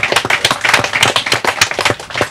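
Audience applauding: a dense, irregular run of hand claps.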